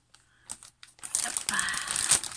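Clear plastic bag of bead packets crinkling as hands pull it open, starting about a second in after a near-quiet moment with one small click.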